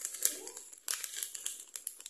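Plastic packet of grated Parmesan crinkling as it is squeezed and shaken, tipping the cheese into a glass mixing bowl; an irregular run of crackles.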